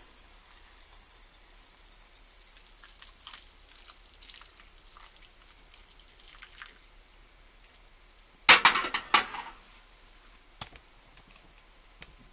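Thickened apple syrup poured from a small stainless steel saucepan over baked apples in a bowl, a faint trickle and drip. About eight and a half seconds in comes a short loud clatter, the loudest sound, then a single click.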